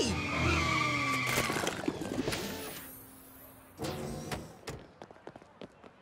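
Cartoon car sound effects: an engine with tyre skidding, the engine note falling and fading away over the first three seconds, with music underneath. It is followed by a couple of short knocks.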